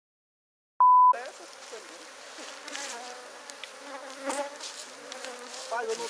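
Silence for almost a second, then a short, loud, steady single-pitch beep from a TV-static edit transition. After it, many honeybees buzz steadily around opened wooden hives.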